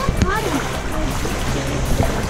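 Shallow seawater sloshing and splashing around legs wading through it, with brief voices near the start.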